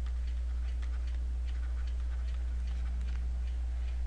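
A steady low hum with faint, irregular light ticks over it: a stylus on a drawing tablet as a word is handwritten.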